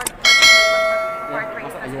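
Subscribe-button sound effect: a short click, then a single bright bell ding about a quarter second in that rings on and fades over about a second and a half.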